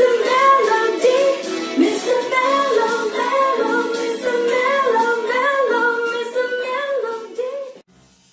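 A woman singing a melody, her voice sliding up and down between held notes, then fading out near the end.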